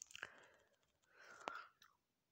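Near silence: a speaker's faint breaths and mouth sounds in a pause between sentences, with one small click about one and a half seconds in.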